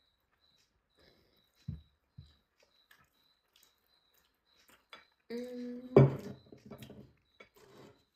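Two soft low knocks about two seconds in, then, past the halfway point, a held closed-mouth 'mmm' of someone savouring a mouthful, broken off by a sharp, louder sound and brief vocal noises.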